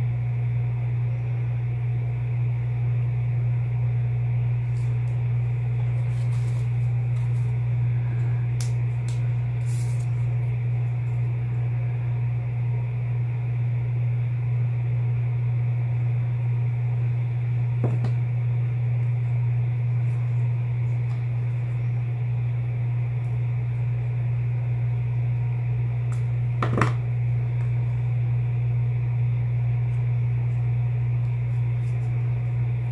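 A steady low hum throughout, with two brief light taps, one midway and one near the end, from craft pieces being handled on the work table.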